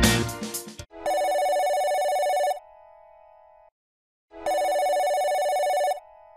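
Music ends in the first second, then a telephone ring sound effect rings twice, each ring about a second and a half long and followed by a faint trailing tone.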